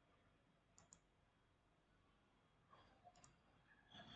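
Near silence with a few faint computer mouse clicks, a pair about a second in and another pair about three seconds in.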